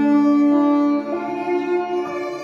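Violin and grand piano playing a slow duet, the violin drawing long held notes over the piano.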